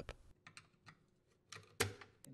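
A few faint ticks of a screwdriver against the metal motor retainer clip on a Whirlpool direct-drive washer motor. Near the end comes a sharp snap as the bottom clip is pried off.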